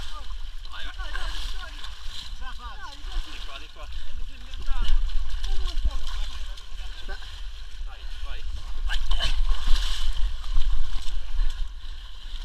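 Several people's voices calling and shouting, not clearly worded, over a steady low rumble.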